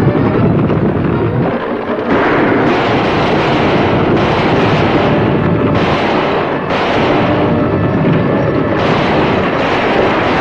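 Loud, continuous stagecoach-chase sound effects: galloping horses and coach wheels on a dirt road, with revolver shots fired during the chase.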